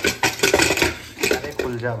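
Aluminium pressure cooker's lid and screw-down crossbar clanking and clicking as it is worked loose to be opened, a quick run of metal knocks.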